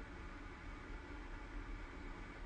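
Quiet room tone: a faint, steady hiss with a low hum underneath, no distinct events.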